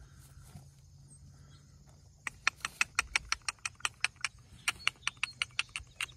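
Horses grazing close by, tearing and chewing grass: quiet at first, then from about two seconds in a rapid, irregular run of crisp clicks, about six a second.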